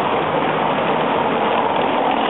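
Steady rushing noise on a handheld camera's microphone outdoors on a street, an even hiss with no distinct events.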